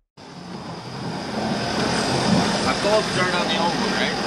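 Steady outdoor rushing noise that fades in over the first second after a sudden cut from music, with a faint voice heard briefly past the middle.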